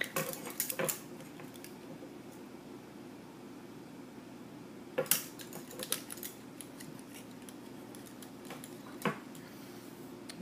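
Metal lamellar plates laced with paracord clinking against each other as they are handled: a quick cluster of clinks in the first second, then single clinks about five, six and nine seconds in.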